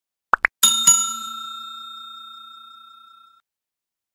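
Subscribe-button sound effects: a quick double click, then a bright notification-bell ding, struck twice in quick succession, that rings and fades away over about three seconds.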